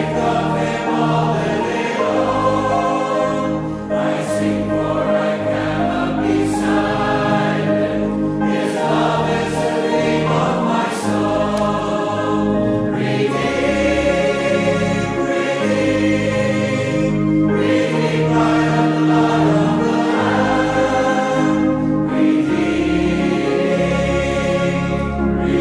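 A church congregation singing a hymn together, accompanied by an organ, in slow, held chords.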